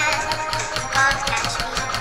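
Rap music: the song's beat playing between vocal lines, with a steady rhythm and a low bass pulse.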